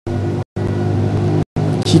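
A steady low hum made of several even tones, broken twice by brief drop-outs of the sound.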